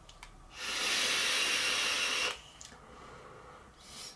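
A puff on a Vaporesso Armour Pro vape kit: one steady, airy hiss of breath and vapour lasting under two seconds, then fading to faint breathing.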